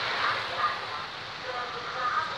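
Street traffic noise of idling motorcycles and a truck, with indistinct voices mixed in.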